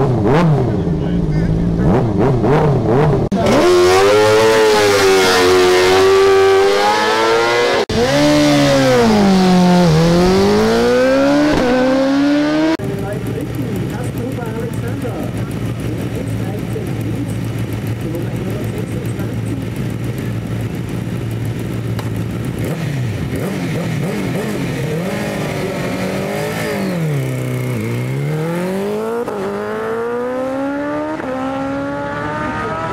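Superbike engine revving hard in long rising and falling sweeps, then a BMW S1000RR's inline-four idling steadily, blipped a few times, and revving up as the bike pulls away near the end.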